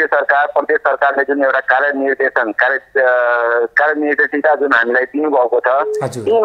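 Speech only: a man talking without a break, his voice thin as over a telephone line, with one drawn-out syllable about three seconds in.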